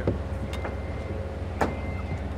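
A steady low mechanical hum with a faint high whine over it, broken by two short sharp sounds, one just after the start and one past the middle.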